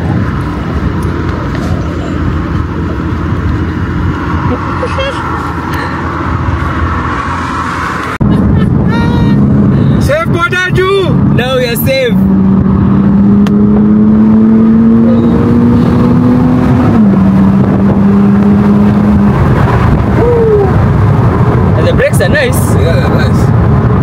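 Mercedes-AMG SLC 43's twin-turbo V6 heard from inside the open-top cabin: after a cut, with wind rushing past, the engine note climbs slowly as the car accelerates, then drops abruptly at an upshift and holds steady. Voices are heard over it.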